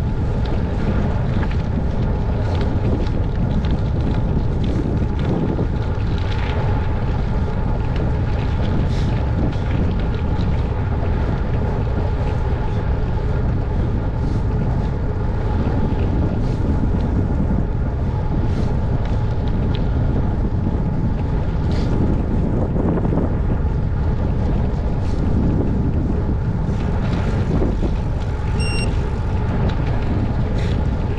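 Wind buffeting the microphone of a bicycle-mounted camera while riding, over a steady rumble of tyres on the road, with scattered faint ticks.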